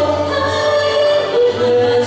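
A woman and a man singing a Broadway ballad duet into microphones, holding long notes, with the melody stepping down in pitch about one and a half seconds in.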